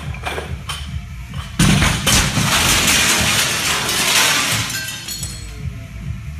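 A loaded barbell with bumper plates crashes into a large wall mirror about a second and a half in. The mirror glass shatters and showers down for a couple of seconds, over background music.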